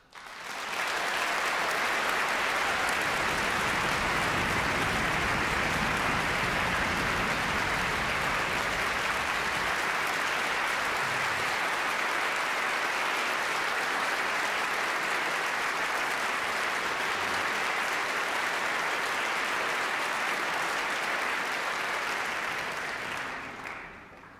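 Audience applauding in a large concert hall. The applause swells within the first second, holds steady, and dies away near the end.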